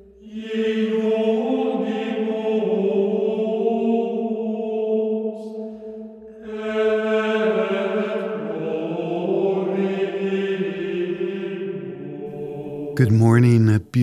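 Vocal chanting on long held notes in two unbroken phrases, with a short pause about six seconds in. A man starts speaking just before the end.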